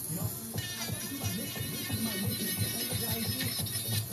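Background music, which fills out about half a second in.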